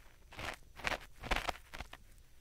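Ear pick scraping gently inside the ear of a 3Dio binaural microphone, in about four short scratching strokes, roughly two a second.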